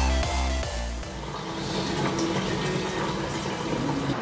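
Electronic dance music with a heavy bass beat cuts off about a second in; then water runs steadily from a bottle-filling station into a plastic water bottle.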